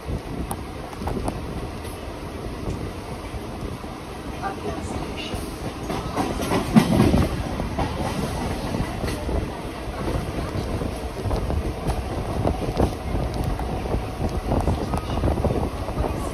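Mumbai suburban local train running at speed, heard from on board: steady rumble with its wheels clattering over the rail joints, loudest about seven seconds in.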